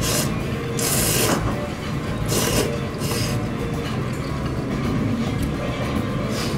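A person slurping ramen noodles: four short hissing slurps in the first half, the longest about a second in, over a steady low rumble.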